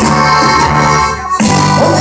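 A live band playing amplified music, with sustained keyboard chords and melody over bass and drums. The music breaks off briefly just past a second in, then comes back in.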